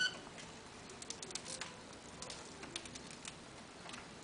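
A lovebird gives one short, high chirp, followed by faint scattered clicks and taps from the caged lovebirds moving about on their perches.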